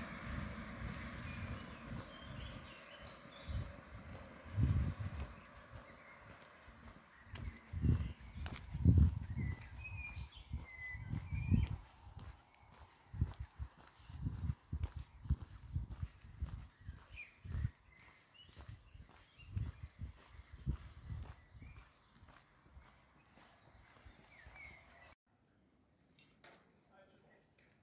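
Outdoor ambience on a walk: irregular low thumps and rumble on a handheld phone microphone as it is carried along, with faint road noise in the first few seconds and a few short bird chirps about ten seconds in.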